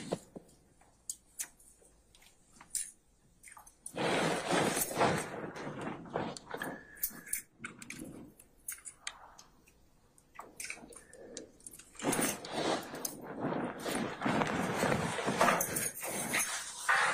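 Handling and movement noise in a recorded interview room: scattered clicks and knocks, then two longer stretches of rustling noise, one about four seconds in and one near the end.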